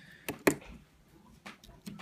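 A few sharp clicks and taps as a metal screwdriver is handled against the opened iPhone and the work mat. The loudest tap comes about half a second in, with fainter ticks near the end.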